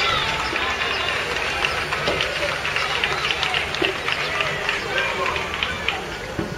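Many overlapping voices of spectators and young players shouting and calling around an outdoor football pitch, with no single voice standing out.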